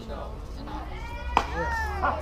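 A softball pitch smacking into the catcher's leather mitt once, sharply, about a second and a half in, under a person's long drawn-out call that glides up and down in pitch.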